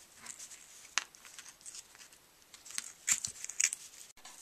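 Dry wheat straws rustling and crackling as they are handled and woven, with a sharp click about a second in and a short run of crackles near the end.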